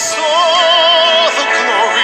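Worship song: a singing voice holds a note with vibrato over sustained instrumental accompaniment.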